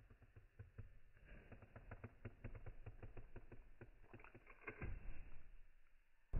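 Faint rapid clicking from the ratchet of a digital torque screwdriver as it is turned against a bolt whose nut is set with red thread locker, to break it free. There is a louder knock just before the end.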